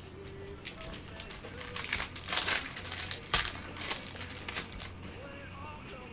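Trading-card pack wrappers crinkling and crackling as they are handled, in a run of sharp crackles, loudest about two and a half seconds in and again just after three seconds.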